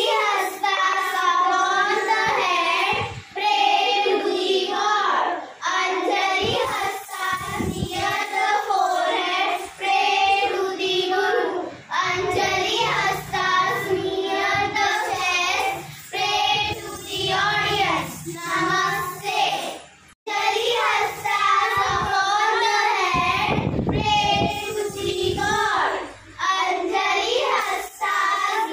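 Children's voices singing together in a long, continuous melodic line, broken by short pauses and cut off briefly about twenty seconds in. A few dull low thuds sound underneath now and then.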